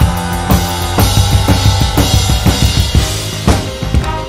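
Drum kit played along with a band recording: a kick and snare beat with cymbals, and a quick run of strokes about halfway through.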